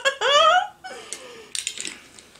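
A woman's high-pitched laugh that rises and falls and ends about half a second in, followed by a few faint crackly rustles near the end.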